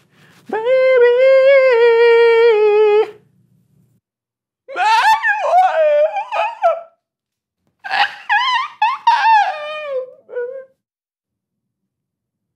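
A man singing unaccompanied: a long high held note on "baby", then two phrases of runs that bend and slide up and down in pitch.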